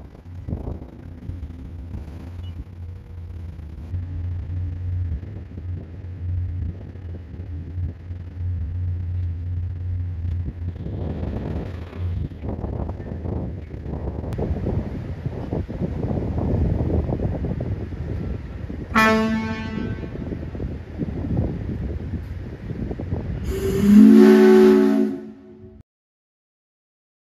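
Riverboat in a river lock: a steady low engine hum gives way to a rougher rumble of wind and water, a short horn blast past the middle, and near the end a loud, low-pitched horn blast about a second and a half long.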